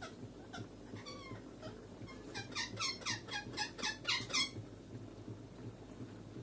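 A small animal's call: a quick run of about nine high, squeaky chirps, about four a second, starting a little after two seconds in, with a few fainter chirps before it.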